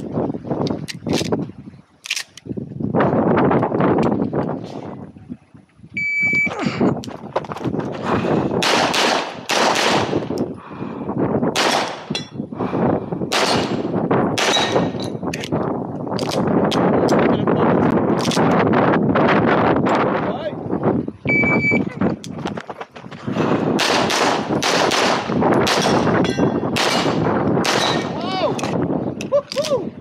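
Pistol gunfire in practical shooting stage runs: an electronic shot timer's short beep starts each run, followed by strings of rapid handgun shots. The timer beeps twice, about fifteen seconds apart.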